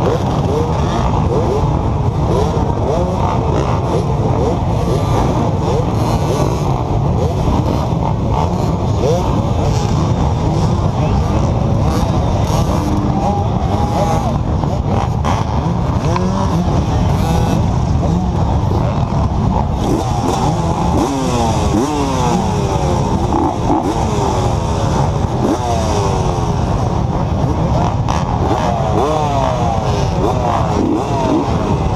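A large field of off-road dirt bikes running together, many engines idling and revving at once, with many overlapping pitches rising and falling as riders blip their throttles, busier in the second half.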